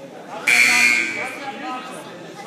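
Gym scoreboard buzzer sounding once, loud and harsh, for just under a second, starting about half a second in.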